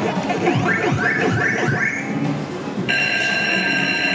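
Electronic sound effects of a Pac-Man Wild Edition video slot machine as its reels spin: a run of swooping synthesized tones gliding up and down over the first two seconds, then a steady high electronic tone held from about three seconds in.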